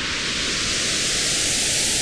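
A synthesized noise whoosh, a rush of hiss swelling and growing brighter as a logo zooms in, with a faint sweep rising slowly through it.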